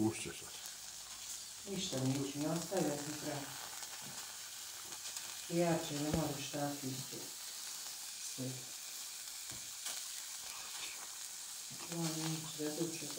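Field mushrooms (Agaricus campestris) sizzling on aluminium foil on a hot stovetop, a steady soft hiss. A voice speaks briefly a few times over it.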